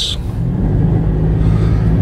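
Car engine and road rumble heard from inside the cabin while driving: a steady low hum that grows a little louder about half a second in.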